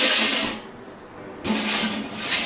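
Hammered copper pedicure bowl pushed across the floor: two short scraping slides, one at the start and one about a second and a half in.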